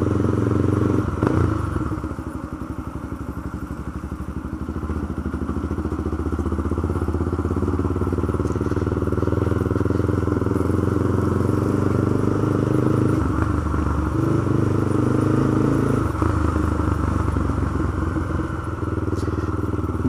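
Honda CB300's single-cylinder engine running at low road speed. It eases off about two seconds in, then picks up again, and its pitch shifts around two-thirds of the way through and again a few seconds later. The tyres rumble over cobblestone paving.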